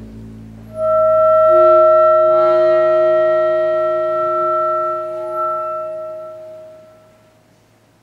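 Chamber sextet of flute, clarinet, saxophone, accordion, double bass and piano holding a long chord over a low bass note, led by clarinet and flute. The chord enters about a second in and dies away about seven seconds in, the close of a piece.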